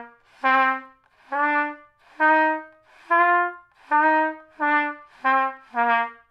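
Trumpet playing a simple tune of about nine separate notes, each started with breath alone and no tongued attack. The notes swell in softly instead of beginning cleanly, so their starts are unclear.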